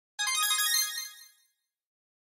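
A short, bright musical chime of several quick high notes. It begins just after the start and fades out after about a second.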